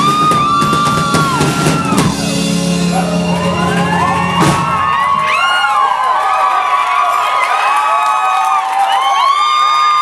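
Live rock band with heavy drums playing the last bars of a song, ending on a final hit about four and a half seconds in. The crowd then whoops and cheers while the last low note fades.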